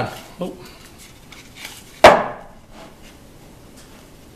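A plywood board knocked down against the wooden fence and base of a table-saw crosscut sled: one sharp wooden knock about two seconds in, with faint handling sounds around it, as the test board is checked for square.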